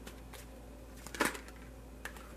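A deck of oracle cards being handled and shuffled: a couple of faint clicks, then one short, louder burst of cards shuffling a little over a second in.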